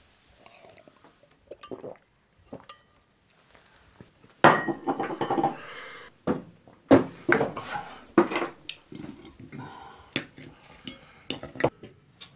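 Dishes and cutlery clinking and knocking in an irregular clatter, sparse and faint at first and then busier and louder from about four seconds in.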